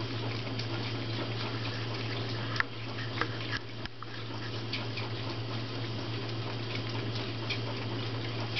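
Three ferrets lapping milk from a plate: small wet licking clicks, scattered and irregular, over a steady low hum.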